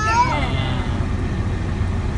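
Steady low hum of a car's cabin with the engine idling. A small child's high voice trails off in the first half-second.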